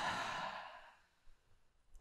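A long, breathy out-breath, the release of a guided deep belly breath, fading away about a second in.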